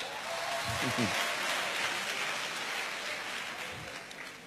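A congregation applauding. The clapping swells about a second in and fades away toward the end, with a few voices heard among it.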